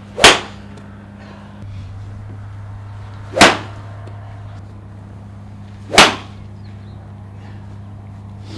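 Three golf shots: a club striking a ball off a practice mat, each a sharp crack, about three seconds apart.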